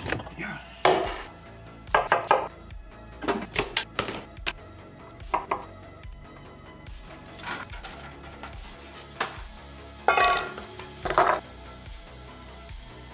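Background music with kitchen prep sounds over it: a series of short knocks and clatters of a knife, dishes and utensils on a wooden chopping board.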